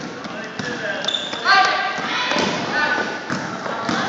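Basketball bouncing on a gym floor during play, several irregular knocks, over players' and spectators' voices calling out in a large, echoing gym.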